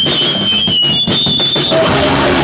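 Loud live punk band in a break: the bass and full chords drop out, leaving a high guitar feedback whine that slides down a little and then holds higher, over a few sharp drum hits. The full band comes back in near the end.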